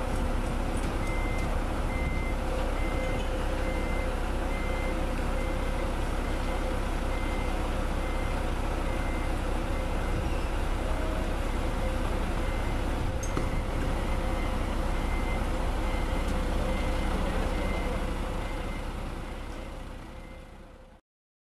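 Heavy truck diesel engines running steadily, with a reversing alarm beeping a little more than once a second as a concrete mixer truck backs up toward the concrete pump. The sound fades out near the end.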